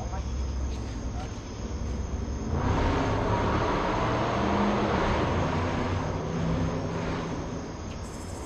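A passing vehicle: a rushing noise that swells up about two and a half seconds in and fades away near the end, over a steady low hum.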